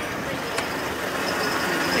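A car driving past close by, a steady rush of engine and tyre noise.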